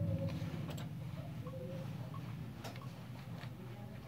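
Faint scattered clicks and ticks over a low steady hum, with a couple of short faint tones.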